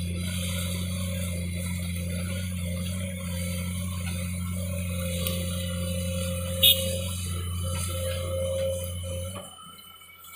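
Heavy diesel machinery running steadily with a constant low drone, which drops away suddenly near the end; one sharp click about two-thirds of the way through.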